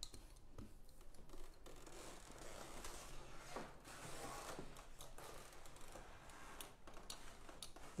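Hand brayer rolling printing ink on an ink slab: a faint, tacky rolling hiss with a few light clicks of handling.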